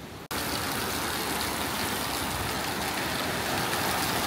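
Steady rush of running water from the constantly flowing outdoor showers and the water running down a concrete channel to the beach. It starts abruptly a moment in, after a brief dropout.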